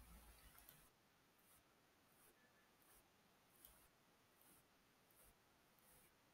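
Near silence: room tone, with a few faint ticks near the start and one more a little past halfway.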